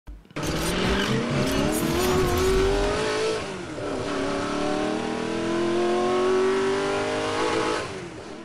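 Car engine accelerating hard, rising steadily in pitch, dipping once about three and a half seconds in as it shifts gear, then climbing again.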